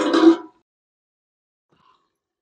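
A woman's voice trailing off in the first half-second, then dead silence.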